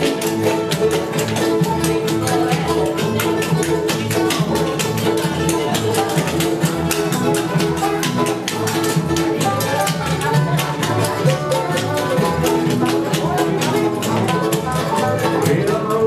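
Live bluegrass band playing an instrumental break: banjo, mandolin and two acoustic guitars picking at a brisk, steady tempo.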